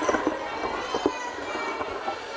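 Microphone stand being handled and adjusted, with a few sharp knocks through the PA, over faint voices in the background.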